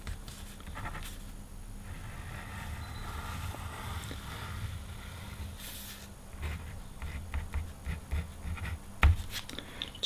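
White Gelly Roll gel pen drawing a wavy line on black paper: a faint, soft scratching of the tip. It then makes short stroke sounds as it writes a word, with a light knock near the end.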